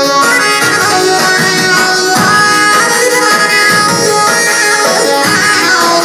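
Instrumental Albanian folk music played live on a Korg keyboard: a lead melody of held notes over a steady accompaniment with a beat.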